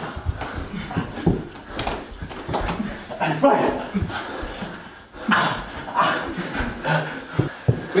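Indoor mini-hoop basketball scrimmage: scattered knocks and thumps as the players jostle and the small ball hits the door-mounted hoop, with wordless shouts from the players.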